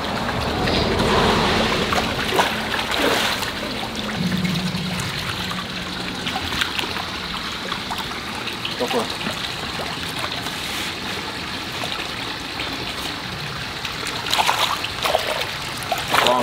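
Water running and splashing steadily in a shallow pond, with brief splashes as a dip net is swept through the water.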